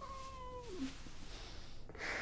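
A woman's high, wailing sob: one drawn-out cry that holds its pitch, then drops away and ends within about a second.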